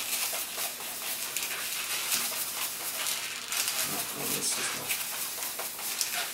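A soft, partly inflated latex twisting balloon squeaking and rubbing under the fingers as it is twisted into a row of small bubbles, with a few longer pitched squeaks about four seconds in.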